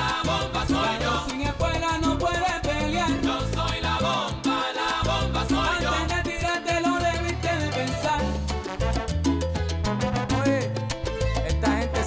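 Salsa music from an instrumental stretch of the song, with no lyrics sung. The percussion grows busier with a quick run of sharp strokes in the last few seconds.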